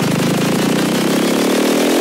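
Psytrance build-up: a buzzy synth tone sweeps steadily upward in pitch while the driving bass line drops away.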